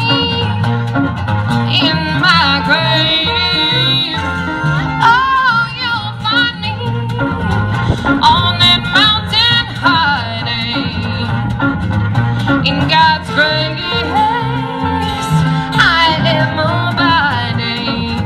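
A live folk-country band plays an instrumental break: fiddle and acoustic and electric guitars over a steady low beat, with a sliding, wavering lead melody on top.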